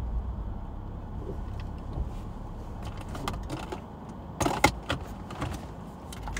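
Rummaging around a car's seats for a missing car key: small clicks, then a cluster of sharp rattling knocks about four and a half seconds in, over a low steady rumble.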